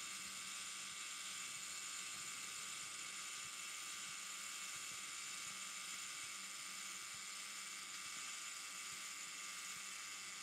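Zorki 4 rangefinder camera's clockwork self-timer running down after release, a faint, steady mechanical sound.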